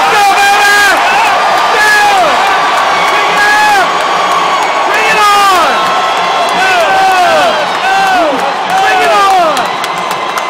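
A group of football players whooping and yelling together: many short rising-and-falling shouts overlapping, over a steady crowd noise.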